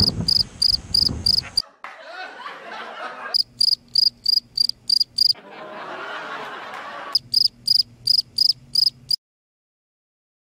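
Cricket chirping, used as a comedy sound effect: three runs of evenly spaced high chirps, about four or five a second, with quieter sounds between the runs. The sound cuts off suddenly about nine seconds in.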